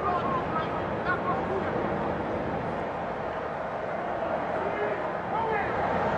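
Steady ballpark background noise with indistinct voices in it, a raised voice coming through briefly near the end.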